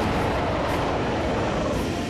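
Monster roar sound effect for a CGI yeti: one long, loud, rough roar.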